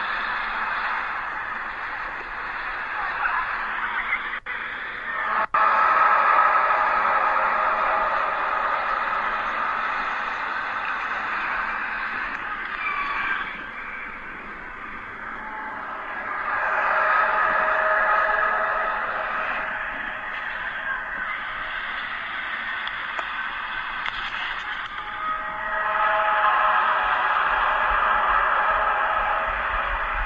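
Enormous, unexplained droning sound from overhead, made of several steady tones held together. It swells and fades in long waves every ten seconds or so, sounds artificially produced and fits no known aircraft or sonic boom. It is heard as muffled, band-limited playback of a phone video over a radio broadcast.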